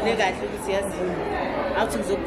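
Indistinct chatter of many overlapping voices in a busy indoor room, with no single voice clear.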